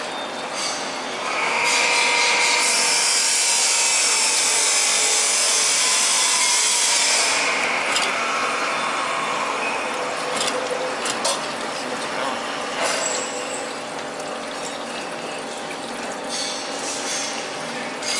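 Hand work on the steel-wire feed and mold of a chain link fence machine: a loud hissing, scraping rush with a faint whine for several seconds, then scattered metal clicks and knocks.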